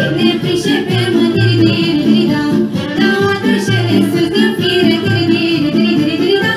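Girl singing a folk song through a microphone and PA over loud instrumental backing with a steady bass line.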